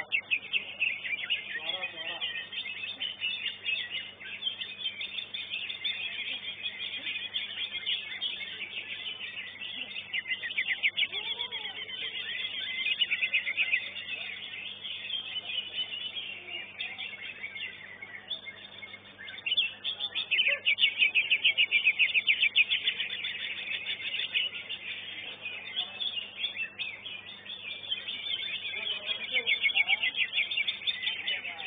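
Greater green leafbird (cucak ijo) singing long runs of rapid, high-pitched trilled phrases, with a short lull a little past halfway before it starts again louder.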